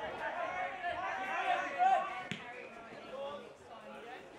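Several voices shouting and calling out over one another on a football field, fading after about two seconds, with one sharp thud a little over two seconds in.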